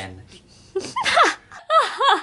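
High-pitched vocal squeals, two short swooping calls whose pitch slides down, about a second in and again near the end, after a word of low speech at the start.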